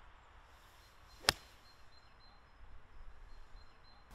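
An iron striking a golf ball off the tee: a single sharp click about a second in.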